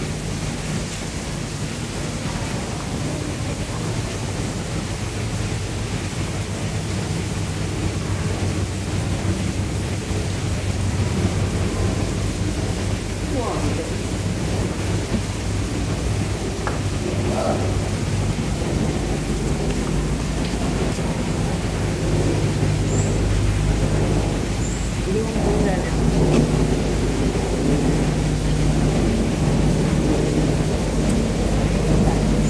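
Steady low rumble with a constant hum underneath and faint voices now and then, getting a little louder toward the end.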